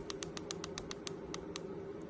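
A quick run of about a dozen light clicks, around seven a second, from a Baofeng DM-1702 handheld radio's keypad as a button is pressed repeatedly to scroll down its menu, over a faint steady hum.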